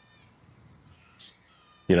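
Near silence in a pause between words. A faint, brief high-pitched tone comes at the start and a short soft hiss about a second in, before a man's voice resumes at the very end.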